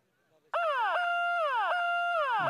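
A loud siren-like tone starts suddenly about half a second in. It slides down in pitch, jumps back up, holds briefly and slides down again, repeating about three times.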